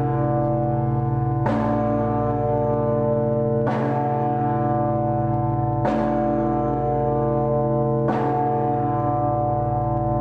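The World Peace Bell, a huge bronze swinging bell, tolling. Its clapper strikes four times, about every two seconds, and the bell's many steady tones keep ringing between strokes.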